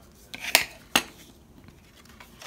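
A plastic burnishing tool set down on a wooden tabletop after creasing cardstock: a short swish, then two sharp clicks less than half a second apart.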